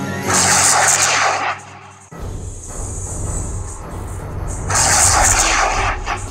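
Battle-game music and sound effects from the BoBoiBoy augmented-reality card app: two loud rushing blast effects, one starting about half a second in and one near the end, with a low rumble between them.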